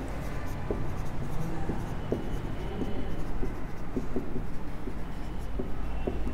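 Marker pen writing on a whiteboard: soft scratchy strokes with small ticks as the tip lifts and lands, over a steady low hum.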